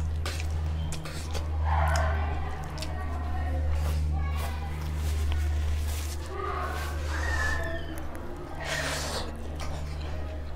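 Close-up eating sounds: fingers mixing rice and curry on a plate, then chewing and lip smacking, with short wet clicks scattered through. A steady low hum runs underneath.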